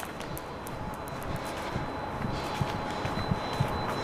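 Steady outdoor town-street background hum with faint distant traffic, and a few soft low thuds.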